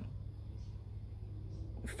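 A pause with only a faint, steady low background hum and no distinct sound.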